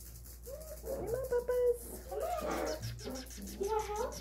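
Three-and-a-half-week-old puppies whining and squeaking in a string of short cries that bend up and down in pitch, with one longer whine about a second in.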